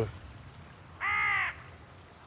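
A rook gives a single caw about a second in, lasting about half a second.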